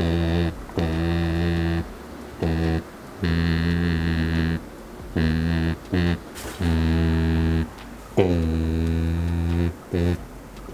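Low buzzing drones from a full-face snorkel mask as the wearer hums through it, the exhale valve vibrating in resonance with his voice. About seven steady one-note drones, each a second or so long, with short breaks between.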